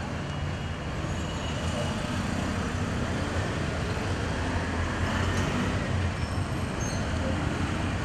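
Steady city road traffic noise: a continuous low hum of vehicles with no distinct events.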